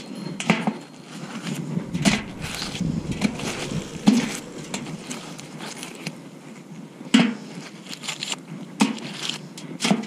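Scrap metal and mud being pulled off a magnet-fishing magnet by gloved hands and dropped into a rusty metal bucket: irregular scraping with about six sharper knocks spread through.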